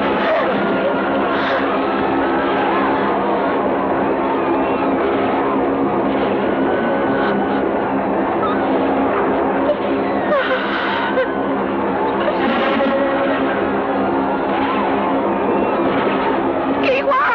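Film soundtrack: a score holding sustained low notes, mixed with cries and shouting voices of a battle scene.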